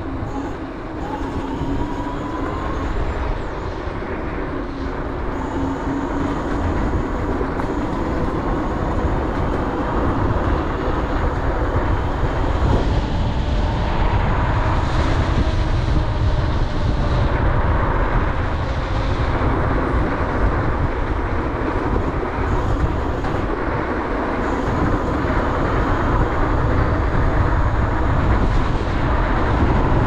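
Wind rushing over the microphone as a Dualtron Thunder electric scooter rides at speed, with a faint whine from its hub motors that drifts in pitch. The sound grows slightly louder through the stretch.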